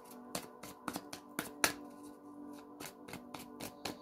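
A deck of tarot cards shuffled by hand, a quick uneven run of card snaps and clicks, about three or four a second, over soft background music with steady held tones.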